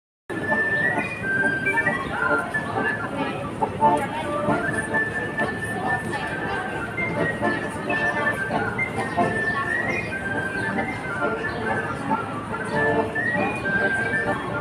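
Street music: a high melody of held notes stepping up and down, with people talking around it.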